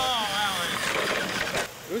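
A person laughing, a drawn-out, wavering laugh that trails into breathy laughter.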